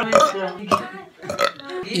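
A man burping, mixed with talk.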